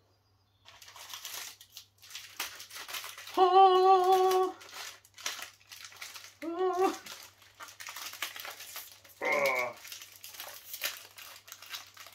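Plastic biscuit-packet wrapper crinkling and being torn open by hand, in crackly bursts. A person's voice sounds a loud held note about three and a half seconds in, then a shorter one and a brief falling one later.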